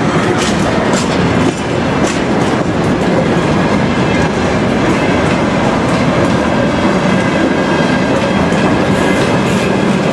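Freight wagons rolling past close by: steady loud noise of steel wheels on the rails, with irregular clicks as the wheels cross the rail joints.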